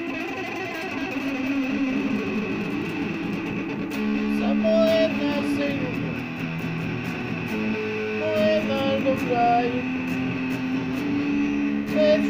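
Electric guitar strummed, ringing chords held steadily, with a few short sliding notes about four seconds in and again near nine seconds.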